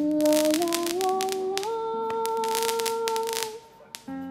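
A singer holds a sustained "la" that steps up in pitch several times, over repeated bursts of crackling from fireworks. The voice and crackle drop away shortly before the end.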